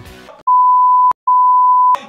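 Steady single-pitch censor bleep near 1 kHz, starting about half a second in, breaking off briefly near the middle and coming back. It covers shouted words.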